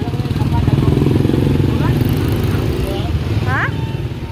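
Motorcycle engine of a tricycle idling close by, running steadily with a fast even pulse. Brief voices rise over it about two seconds in and near the end.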